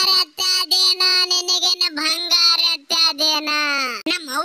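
A high-pitched, child-like dubbing voice singing a short tune, its syllables held on near-steady notes with brief breaks between phrases.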